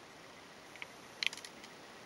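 Faint light clicks from a small plastic model being handled and turned in the fingers, over quiet room tone: one click just under a second in, then a quick cluster of clicks a moment later.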